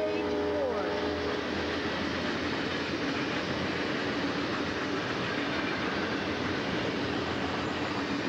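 Freight train of hopper cars rolling past at close range, a steady, even rolling noise of steel wheels on rail.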